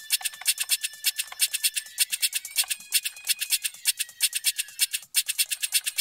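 A 128 BPM percussion loop played through a convolution reverb whose impulse is a pop vocal loop. It comes out as a fast, even run of bright, scratchy ticks, about eight a second, with a faint held tone above them and almost no bass.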